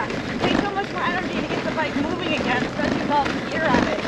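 Mostly speech: two cyclists talking as they ride, with a steady rush of wind noise on the microphone underneath.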